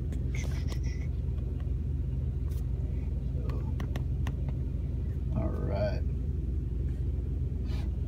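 Steady low rumble of the 1992 Cadillac Brougham's engine idling, heard inside the car's cabin. A few light clicks sound over it, and a brief mumble of voice comes about two-thirds of the way in.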